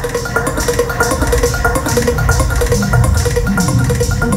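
Live electronic music played loud through a club sound system: a moving bass line under quick, evenly repeating short notes.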